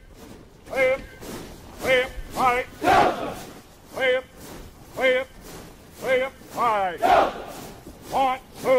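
Men's voices shouting short, sharp calls about once a second, cheering on a soldier doing a hex-bar deadlift, with louder, rougher yells about three and seven seconds in.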